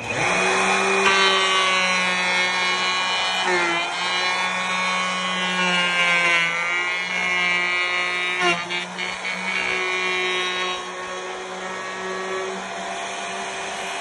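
Handheld wood router switched on and running with a steady high whine as its bit cuts the profile of a wooden guitar neck; the pitch dips briefly when the cutter bites into the wood, about four seconds in and again with a sharp knock about eight seconds in.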